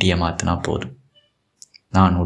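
A man speaking. His voice stops about halfway for a short pause, broken only by a faint click or two, before the talk resumes.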